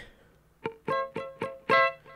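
Ibanez electric guitar playing a palm-muted A minor chord figure high on the neck (frets 12 to 14): one short single note about half a second in, then four short chord stabs in quick eighth notes, the last a little louder and longer.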